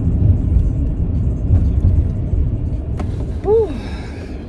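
Low, steady road and engine rumble inside a moving car's cabin, easing slightly near the end.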